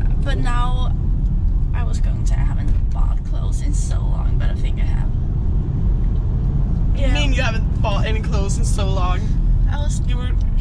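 Steady low road and engine rumble inside a moving car's cabin, with a woman's voice talking briefly near the start and again from about seven seconds in.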